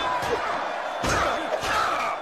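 Movie soundtrack of a gladiator arena fight: a roaring crowd, with a heavy slam at the start and another about a second in.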